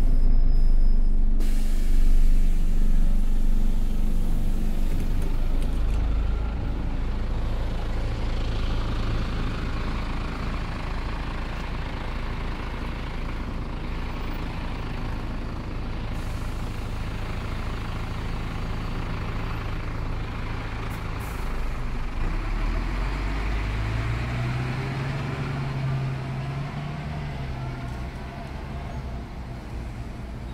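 Karosa B931E city bus's diesel engine idling at a stop, with a sudden hiss of compressed air about a second and a half in as it opens its doors. The engine note rises and falls again shortly before the end as the bus pulls away.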